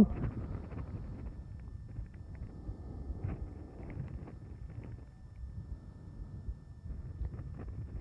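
Quiet room ambience: a low, steady background hiss with a few faint, scattered ticks.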